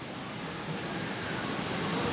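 Steady, even background hiss of the hall recording, with no distinct events, growing slightly louder toward the end.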